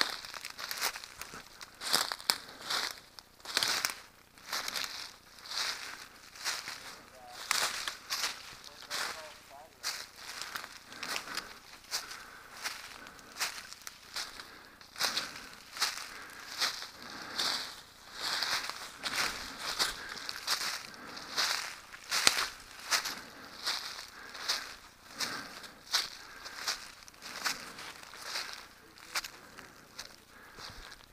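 Footsteps crunching through dry leaves, twigs and brush at a steady walking pace of about one and a half steps a second, with vegetation rustling against the walker.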